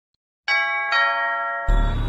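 A two-note ding-dong chime, struck about half a second in and again just under half a second later, each note ringing on. Near the end a loud, deep rumbling music intro comes in.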